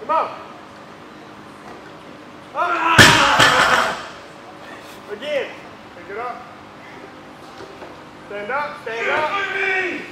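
A single loud slam about three seconds in, the loudest sound here, mixed with short shouts from men's voices; more shouting comes in short bursts later, strongest near the end.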